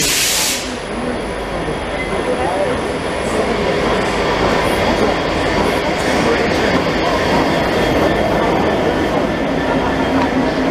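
Locomotive-hauled passenger train pulling into an underground station platform: a steady, loud rumble of the locomotive and wheels that builds as it passes. A loud hiss cuts off about half a second in.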